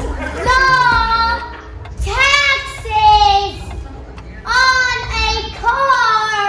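A young girl's high voice singing in drawn-out notes that slide in pitch, about half a dozen short phrases with brief gaps between them.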